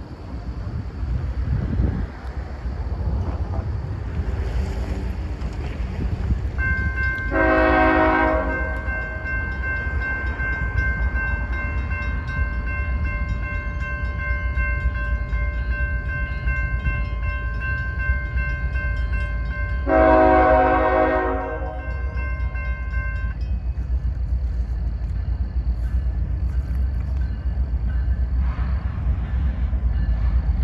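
Lead locomotive's air horn on an approaching CSX freight train: a chord of several notes held for about seventeen seconds from about a quarter of the way in, swelling louder twice for a second or so each time, then cutting off. A steady low rumble of the train runs underneath.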